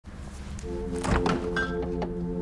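A fridge-freezer door pulled open with a couple of thunks about a second in, over soft sustained music chords that fade in during the first half second.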